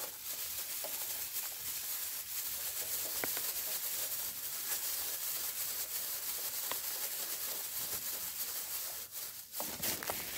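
Steady rustling of a thin plastic bag worn over the hand as long bolts are screwed in by hand, with a couple of faint clicks.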